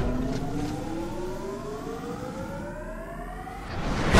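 Sci-fi energy weapon sound effect powering up: one rising electronic whine that climbs steadily for nearly four seconds and grows fainter as it climbs. A loud burst cuts in right at the end.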